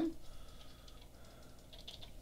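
Faint clicking taps on a computer keyboard in a quiet room.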